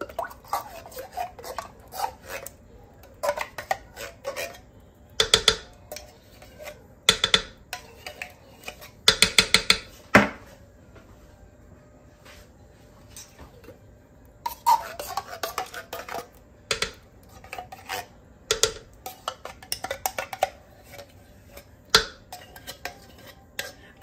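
A spatula scraping thick condensed cream of mushroom soup out of a tin can into a slow cooker, in scattered bursts of scrapes and knocks, with a quick run of about five knocks around nine seconds in.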